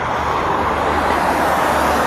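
Highway traffic: cars passing with a steady rush of tyre and engine noise.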